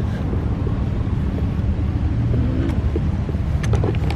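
Wind buffeting the microphone of a handheld camera carried outdoors, a steady low rumble, with a few faint clicks near the end.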